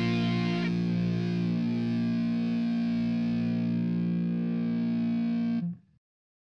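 Closing theme music ending on one long held chord, which stops about half a second before the end.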